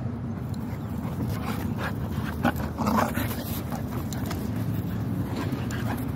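Dogs vocalizing while play-wrestling, with a few short sounds clustered about two and a half to three seconds in, over a steady low rumble.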